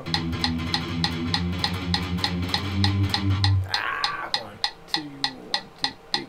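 Electric guitar picking a fast palm-muted riff on the low strings against a metronome clicking about three times a second, at 200 bpm. The chugging wavers in level, a tempo the player doesn't quite manage cleanly.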